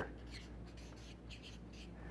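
Quiet room tone in a pause between words: a steady low hum with a few faint, brief rustles.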